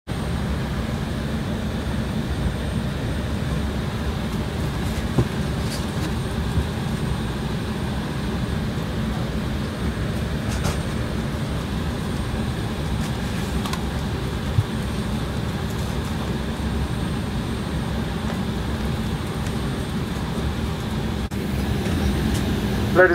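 Steady cabin air-conditioning and ventilation noise inside an Embraer 190 airliner parked at the gate before departure, with a constant low hum and an occasional faint click.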